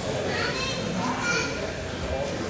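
Indistinct, overlapping chatter and calls from a crowd of young people in a large hall, with no single voice standing out.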